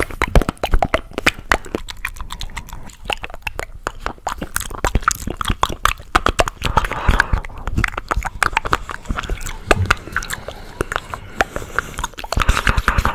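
Close-miked mouth sounds of eating a chocolate caramel and peanut ice cream bar, chewing and sucking: a dense, unbroken run of sharp mouth clicks.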